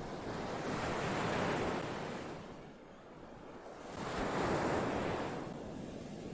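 Recorded ocean surf: waves washing onto a shore in two swells, the first cresting about a second and a half in, a lull, then a second around four and a half seconds in.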